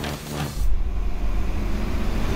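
Heavy goods truck running along a road, a deep steady rumble of engine and tyres that comes in strongly under a second in.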